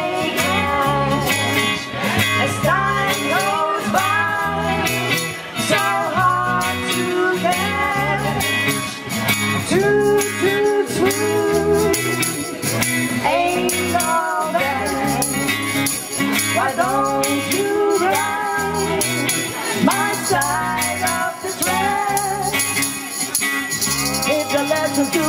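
Live band playing an instrumental break: electric guitar lead with bending, sliding notes over bass guitar and drums. A hand-shaken jingling percussion instrument rattles along throughout.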